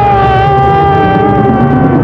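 A long, high wailing tone rises at the start and is held for about two seconds, sinking slightly in pitch, over a low rumble of the film's soundtrack. Two shorter rising-and-falling wails come just before it.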